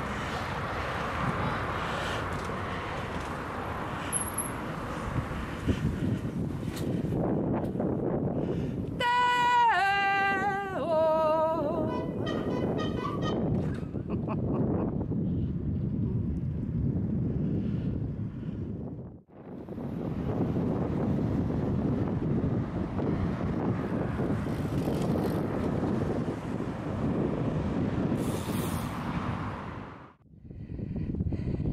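Steady wind rush and rolling noise while riding a bicycle along a paved path. About a third of the way in comes a short pitched sound that steps down in pitch, and about two-thirds through the sound drops out for a moment.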